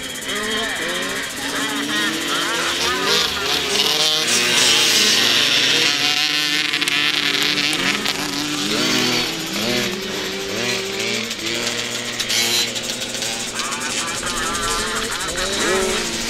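Several small two-stroke youth motocross bikes racing past on a grass track, their high buzzing engines revving up and down and overlapping as they go through the corner and accelerate away.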